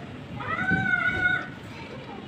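A child's voice: one drawn-out, high-pitched call lasting about a second, starting about half a second in.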